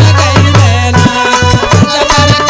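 Instrumental passage of Bhojpuri folk song accompaniment: a dholak plays strokes about three a second, its bass notes bending in pitch, over steady held harmonium notes.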